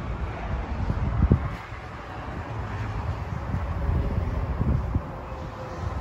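Wind rumbling and buffeting on a handheld phone microphone over outdoor lot ambience, with a louder low thump a little over a second in.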